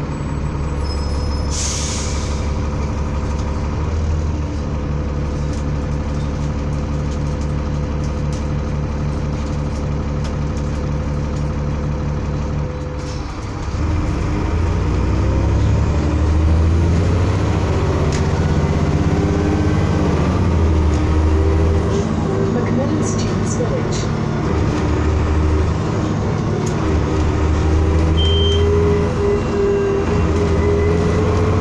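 Diesel engine of a Transbus ALX400 Trident double-decker bus heard from inside the passenger saloon. It runs steadily at idle, with a short hiss of air about two seconds in. About 13 seconds in the bus pulls away, and the engine revs rise and fall repeatedly as it works up through the gears.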